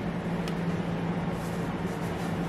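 Steady low hum with an even hiss: background room noise, with one faint click about half a second in.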